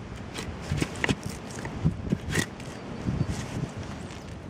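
A French-pattern draw knife shaving a seasoned birch mallet handle, a string of short, uneven cutting strokes as the handle is smoothed and lumps are taken off.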